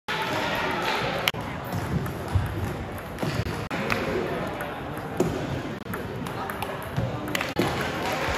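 Several sharp clicks of a plastic table tennis ball striking paddles and bouncing on the table, spaced irregularly, over a steady background of voices chattering in an echoing gym.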